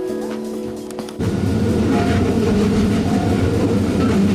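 Background music with held tones. About a second in, a loud low rumble of a train running on the track comes in over the music.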